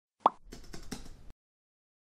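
Intro sound effect: a sharp pop, then a quick run of soft clicks like typing keystrokes as a web address is typed into an address bar.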